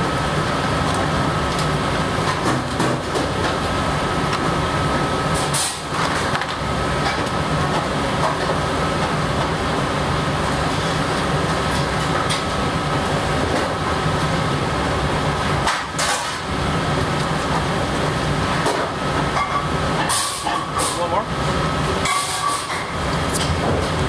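Steady machinery hum with a thin constant whine, over indistinct background voices, broken a few times by short clinks or clatters.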